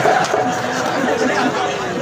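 Men's voices talking over one another, chattering.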